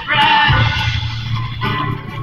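A live bluegrass band playing: a sung phrase ends about half a second in, and the instruments carry on over a steady bass line.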